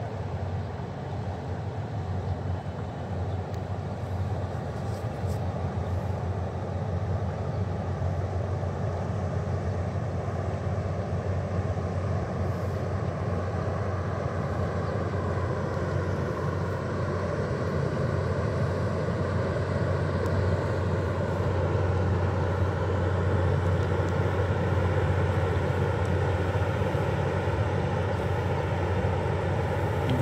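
River cruise ship's engines droning steadily as it passes close by, the low hum slowly growing louder as the bow draws nearer.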